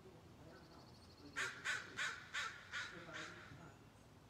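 A bird calling six times in quick succession, harsh calls about three a second, starting about a second and a half in.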